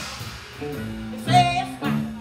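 Live rock band playing: a loud, dense passage breaks off, a few held guitar and bass notes follow, and a voice sings out over the band about a second and a half in.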